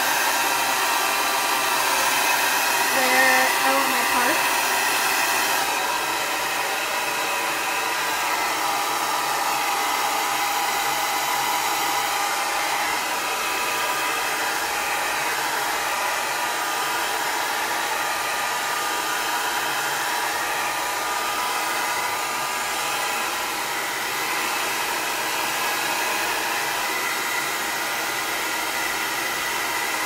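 Le Compact travel hair dryer running on its top fan speed: a steady rush of air with a constant whine. It turns a little quieter and duller about six seconds in.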